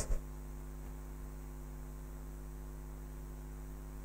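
Steady low electrical mains hum, a constant buzz with no other sound standing out.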